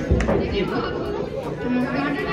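Several voices talking over one another in a large hall, with no single clear speaker. A couple of sharp taps at the very start.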